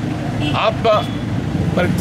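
A man speaking in short phrases, with pauses, over a steady low rumble of street noise.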